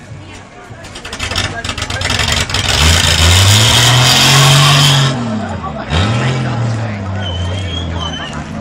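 A ute doing a burnout: its engine revs hard with tyre screech, climbing from about a second in and holding high until about five seconds in. The revs then fall away, pick up again a second later and hold steady.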